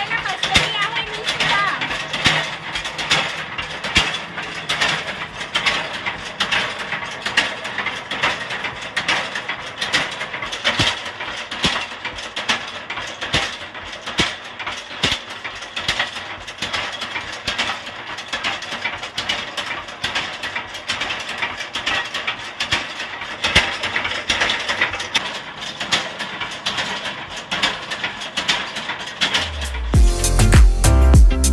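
Belt-driven spice-pounding mill running, its iron pestle rods pounding dried red chillies in the mortar with a fast, continuous clatter of knocks.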